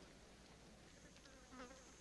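Near silence, with a faint brief sound about one and a half seconds in.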